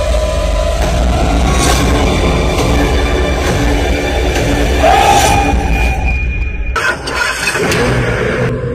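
Dramatic film background score: a heavy low rumble under held, swelling tones, with a brief rising swell about five seconds in. The low rumble drops away about seven seconds in.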